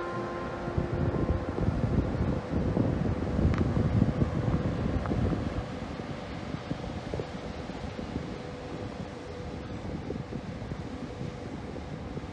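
Wind buffeting a phone microphone in irregular low gusts, strongest in the first half and easing later, with a faint steady hum underneath.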